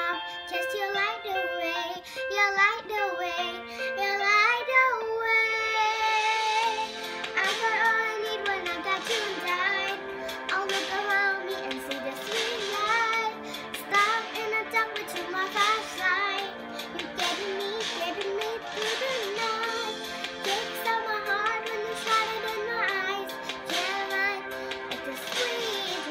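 A young girl singing a pop ballad while accompanying herself on piano. The piano part grows fuller and brighter about five seconds in.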